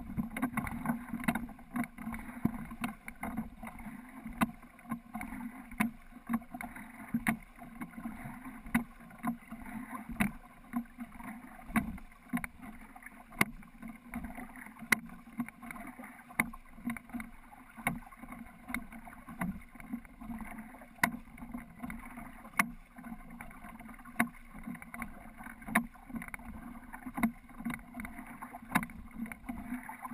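Oars knocking in the oarlocks of a wooden Ness yawl with each rowing stroke, a sharp clunk about every second and a half, over steady water noise around the hull.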